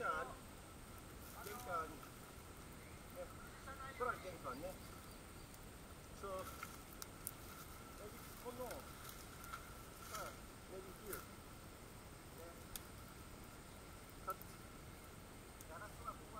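Faint, muffled voices of two people talking in short phrases, with a few sharp snaps in the brush and a steady faint high tone underneath.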